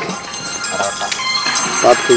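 A knife chopping ginger on a wooden block, a few sharp knocks, under brief snatches of people talking.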